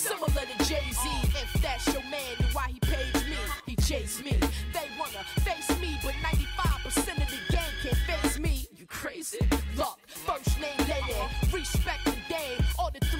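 1990s hip hop track: rapping over a drum beat with a deep, repeating kick and bass line. The beat cuts out briefly twice near the end.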